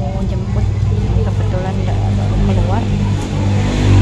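A steady low engine hum, like a motor vehicle idling nearby, with a woman's voice talking softly over it.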